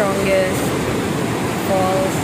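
Steady rush of a large, powerful waterfall, with brief voices heard over it near the start and again near the end.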